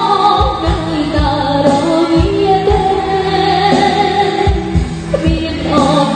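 Live band playing a Khmer pop song: a female vocalist sings over electric guitar, bass, keyboard and drum kit, with a regular kick drum.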